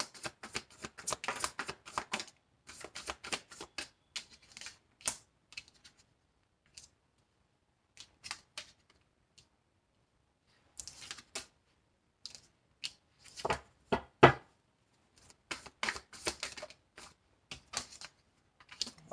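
Tarot cards being shuffled by hand, a fast dense run of flicking and riffling clicks, then sparser taps as cards are drawn and laid onto a glass tabletop. Later come more clusters of card sounds with one sharp knock, the loudest sound.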